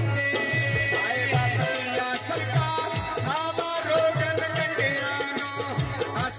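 Live Punjabi folk singing: a male voice sings an ornamented, gliding melody through a PA system over a steady rhythm of tabla-style hand drums.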